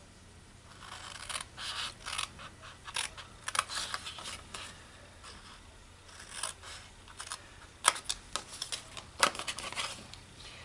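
Small craft scissors snipping through cardstock in a run of short, irregular cuts, cutting out the corner notches of a scored box template, with two sharper clicks of the blades near the end.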